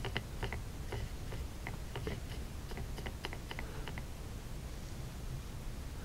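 Paintbrush stirring watered-down acrylic paint in a small plastic palette well, the brush clicking against the plastic in a quick, irregular run of light ticks that dies away about four seconds in.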